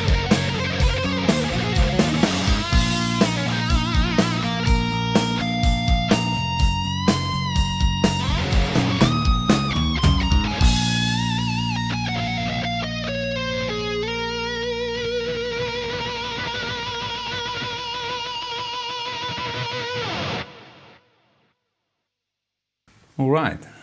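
Overdriven electric guitar playing a rock lead with string bends over drums and bass. About halfway in the band stops and the guitar glides down in pitch into one long held note with wide vibrato, which cuts off shortly before the end.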